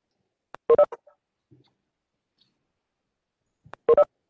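Two short electronic chime tones from the video-conference software, about three seconds apart, each a brief cluster of notes with a faint click just before it: join notifications as more participants enter the call.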